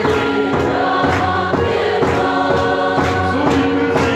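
Gospel music: a choir singing over instrumental backing with a steady beat, about two beats a second.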